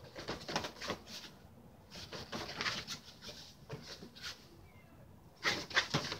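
Rustling and scuffling from a dog jumping on and off a raised fabric cot bed, its paws striking and scrabbling on the taut cot fabric and frame, in several short bursts, the loudest near the end.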